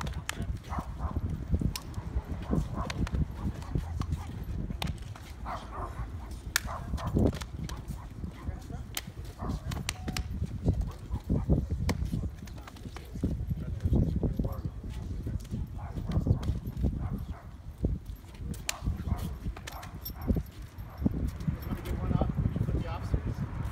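Indistinct chatter among a small group of people, with many short clicks and knocks from shoes on concrete and pats on the back as they hug and shake hands, over a low rumble.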